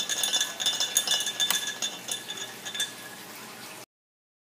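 The magnetic stir bar in a glass beaker of water on a Stir-Plate 3000 clinking and rattling irregularly against the glass. It is losing its coupling with the magnet at a low speed setting, the stability problem of this stirrer at slow speeds. The sound cuts off suddenly near the end.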